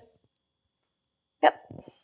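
Near silence, then a woman's single short spoken "Yep" about one and a half seconds in.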